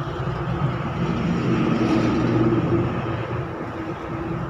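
A mass of honeybees buzzing on the comb: a steady hum made of many wavering pitches.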